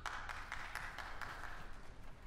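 Concert-hall audience noise while the music pauses: a burst of rustling with light clicks, lasting nearly two seconds and fading away.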